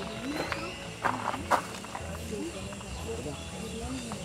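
Untranscribed voices talking in the background, short rising and falling fragments that overlap, with two sharp knocks a little after a second in.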